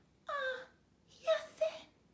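A woman's voice giving two short, theatrical wailing moans in character: the first slides down in pitch, the second is a pair of quick whiny notes.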